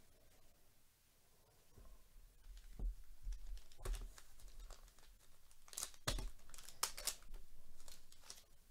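Baseball card pack wrapper being torn open and crinkled by hand, a string of sharp crackles that starts about two seconds in and is loudest near the end.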